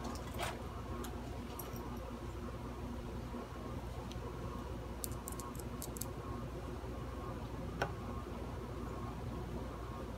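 A few light clicks and taps of small screws and hardware being handled on an electric guitar body while the pickguard is refitted: a cluster about halfway through and a sharper click near the end. Underneath runs a steady low hum.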